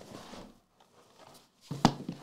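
Quiet handling of a cardboard trading-card box as it is opened by hand, with one sharp click near the end.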